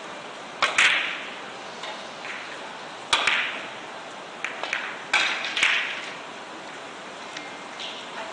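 Carom billiard balls and cue clicking during a three-cushion shot: a sharp pair of clicks about half a second in, another click around three seconds in, a few lighter ticks, then a pair of clicks around five seconds in, each with a short ring.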